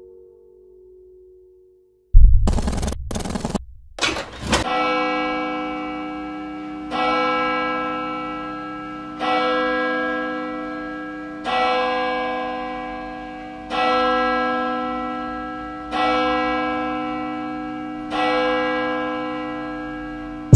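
Song intro: after a short near silence, a few loud, sudden noise hits about two to four seconds in, then a bell-like chime chord struck about every two and a quarter seconds, each strike ringing down before the next.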